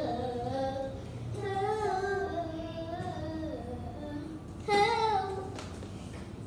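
A young child singing a song in a high voice, in a few phrases. The loudest, highest phrase comes near the end, and then the singing stops.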